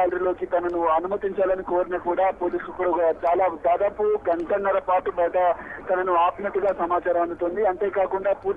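A man speaking continuously over a telephone line, his voice thin and phone-quality.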